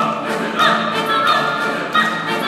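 A female singer holding high notes with vibrato, accompanied by an orchestra.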